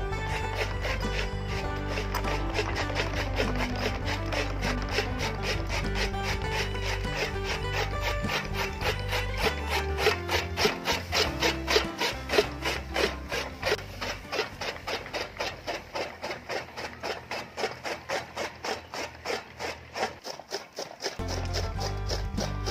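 Gear-driven chaff cutter (toka) chopping fodder. Its bladed flywheel slices through the stalks in quick, regular strokes, about four a second, from about ten seconds in. Background music plays before that and comes back near the end.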